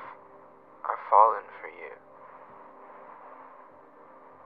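A man's voice, filtered thin like a phone call, makes a short wavering non-word sound about a second in, over a steady hiss.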